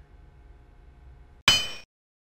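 A single metallic clang about one and a half seconds in, bright and ringing, cut off abruptly after less than half a second. Before it there is only faint room tone with a low hum.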